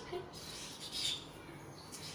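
Felt-tip marker squeaking on paper as digits are written, a few short high squeaks, the strongest about a second in.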